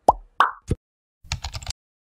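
Animated sound effects: a falling swoop, a rising swoop and a short plop in quick succession, then, about a second and a half in, a quick run of keyboard-typing clicks as a web address is entered into a search bar.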